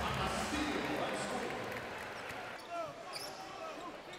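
Arena sound at a basketball game: crowd noise that fades over the first two seconds, with a basketball being dribbled on the hardwood court. A few short squeaks come in the second half.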